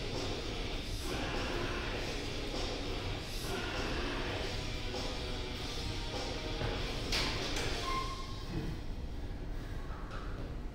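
Background music playing steadily in a gym hall.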